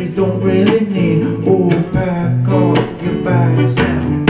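Acoustic guitar strummed in a steady rhythm, with a man singing a held, wordless melodic line over it.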